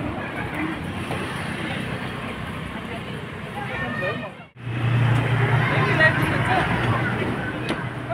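Busy street: a car drives past close by over the chatter of people walking. About four and a half seconds in the sound cuts out abruptly and gives way to a steady low hum with voices nearby.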